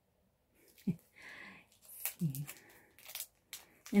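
A greeting card's clear plastic sleeve crinkling and clicking in scattered bursts as it is handled, with a couple of brief vocal sounds.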